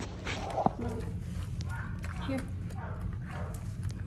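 A dog's claws clicking irregularly on a hard smooth floor as it moves about, over a steady low hum.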